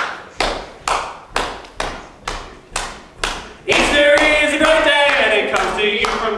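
Hand claps keeping a steady beat, about two a second, as a count-in. About four seconds in, voices come in singing over the clapping.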